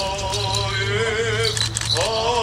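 Armenian Apostolic clergy chanting a graveside prayer: one sustained male voice holding long, slightly wavering notes, pausing briefly near the end before going on.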